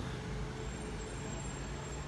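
Steady outdoor background noise: a low rumble and hiss with a faint steady hum, nothing sudden.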